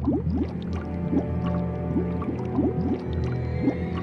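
Cartoon bubble sound effects: many quick rising bloops, about three a second, over background music with a steady low bass.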